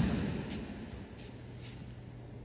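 The dying echo of a judo partner's body slapping down on the tatami mats after a kouchi gari throw, fading over about a second in a large sports hall. It is followed by a low steady hum and a few faint ticks of movement on the mats.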